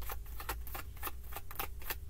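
A tarot deck being hand-shuffled: a quick, irregular run of soft card clicks and slaps, about seven a second.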